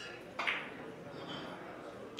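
Low murmur of voices in a billiards hall, with one short noisy burst about half a second in.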